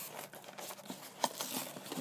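Faint handling noises of a cardboard toy blind box and the foil bag inside it: light rustling with a few small clicks and taps, the clearest about a second and a quarter in.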